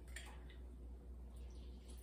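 Faint squish and dripping of a lemon half squeezed in a hand-held lemon press, juice falling into a bowl, with a few soft clicks from the press.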